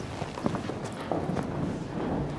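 Footsteps of several people in boots hurrying across a hard floor, a quick run of separate knocks.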